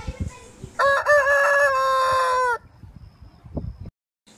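A rooster crowing once: a single cock-a-doodle-doo about two seconds long, starting about a second in, with its last note held steady before it drops off.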